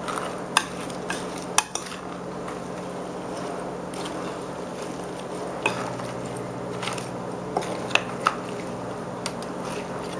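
A spoon stirring raw shell-on shrimp through an oily spice-and-lemon marinade in a bowl, with scattered sharp clicks of the utensil knocking against the bowl.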